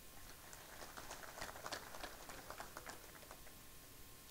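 Faint, irregular light clicks and ticks, scattered mostly through the middle seconds, over low background hiss.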